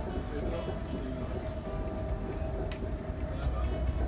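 Moving commuter train heard from inside the carriage: a loud, continuous deep rumble with a steady mid-pitched hum over it, and one sharp click a little past halfway.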